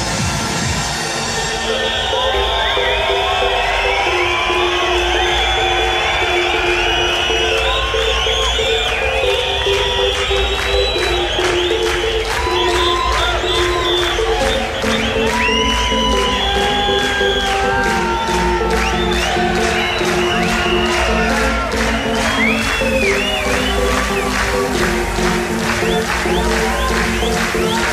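Electronic dance music from a live DJ set, with held synth chords over a steady low beat and fast hi-hats coming in about a third of the way in. A festival crowd cheers and whistles over the music.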